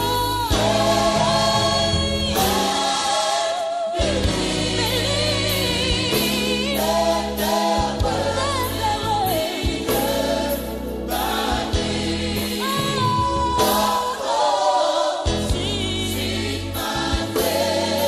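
Gospel music with a choir singing over instrumental backing and a steady beat.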